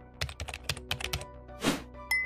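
Computer keyboard typing sound effect: about ten quick keystrokes in the space of a second, then a brief whoosh near the end, over soft background music.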